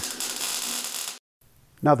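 Wire-feed welder laying a short tack weld on thin sheet metal: a dense hiss that stops abruptly a little over a second in.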